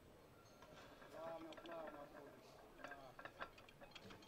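Faint, distant voices speaking over quiet room tone.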